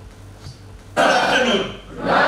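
A man clears his throat loudly into a handheld microphone, heard through the hall's PA. The rough burst starts suddenly about a second in and lasts just under a second, after a faint low hum with soft clicks.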